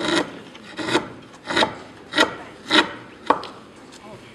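Hand-held carving chisel paring a curved wooden block, six short scraping slicing cuts at about one every half second, the last one sharper.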